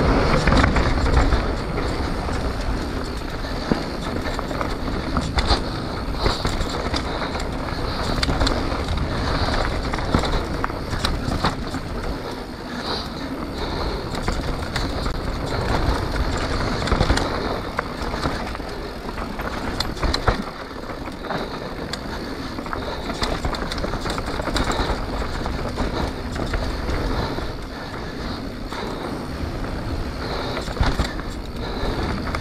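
Mountain bike being ridden down a dirt trail: steady tyre noise with frequent irregular rattles and knocks from the bike, loudest in the first second or so.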